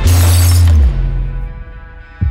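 A mirror's glass shattering with a sudden hit and a deep boom, dying away within about a second, over music that rings on.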